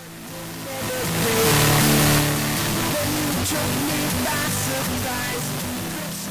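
The null-test leftover of a music mix: two versions of the same mix, one polarity-inverted, played together. What remains is a thin, fuzzy ghost of the music with a wash of noise, the error left by 24-bit fixed-point processing, or 'imprecise math'. It gets louder over the first two seconds as the master is turned up about 16 dB, then stays steady.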